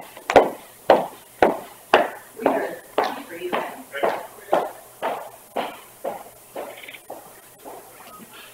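Footsteps walking away, about two steps a second, each one a sharp knock that grows steadily fainter.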